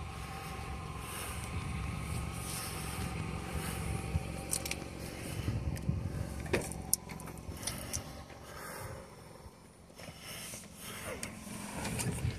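Wind rumbling on the microphone while someone walks to a car, with a few sharp clicks about halfway through, then the rustle of the car door being opened and climbed into near the end.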